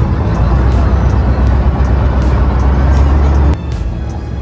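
Steady low rumble of a passenger ferry's engine heard on board, with water and wind noise over it. The rumble drops away suddenly near the end.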